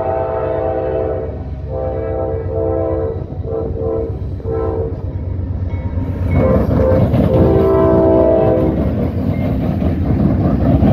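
CSX freight locomotive air horn sounding a series of blasts, some long and some short, as the train approaches. About six seconds in the locomotives pass close by: the diesel rumble and wheel rattle get louder, and the horn gives one more long blast.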